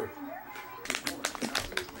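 A quick run of sharp clicks and knocks starting about a second in: handling noise from the camcorder being moved and re-aimed.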